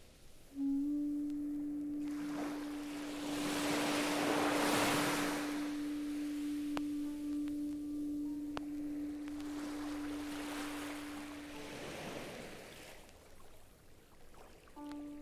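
Ambient music played from a vinyl record: a single steady low tone held for about eleven seconds, starting just under a second in, under two slow swells of hiss that rise and fall like surf.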